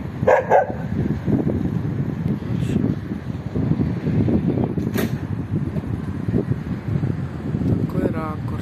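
A dog barking briefly just under a second in, over a continuous low rumble, with a sharp click about five seconds in.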